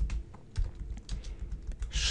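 Computer keyboard keys being pressed in a quick, uneven run of clicks as a short phrase is typed.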